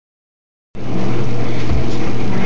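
A loud, steady mechanical hum with a constant low drone, starting abruptly under a second in.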